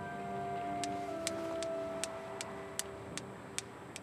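Steel balls of a desk Newton's cradle clicking against each other in a steady, even rhythm of about two to three clicks a second, starting about a second in.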